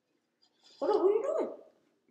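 A single whining vocal sound, just under a second long, its pitch rising and then dropping away.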